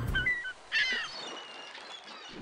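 Birds calling: a few short high chirps, then a quick run of sweeping notes just before a second in, followed by a faint high held note.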